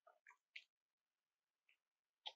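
Near silence with a few faint computer keyboard keystrokes, a cluster of soft clicks in the first half-second and one more near the end.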